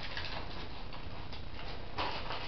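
Faint rustling of baking paper being peeled off and lifted away from a sponge cake layer, over steady room noise.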